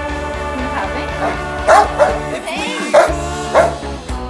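A big Rottweiler–Dogo Argentino mix barking about four times in the second half, over background pop music.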